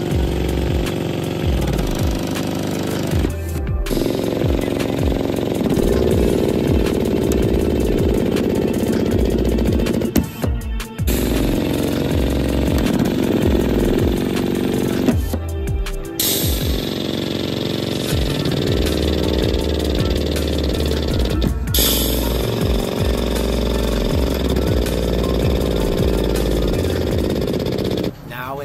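Background music with a steady beat, broken by a few brief dropouts.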